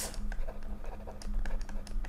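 Stylus tip tapping and ticking on a pen tablet during handwriting: a quick, irregular run of small clicks, over a faint steady electrical hum.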